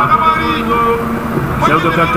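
Voices chanting the same short phrase over and over, sung with held and sliding notes, over the noise of a large crowd.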